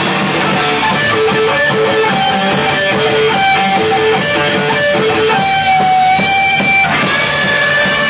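Hardcore band playing live, with a loud electric guitar riff of quickly repeated notes and a long held high note near the end.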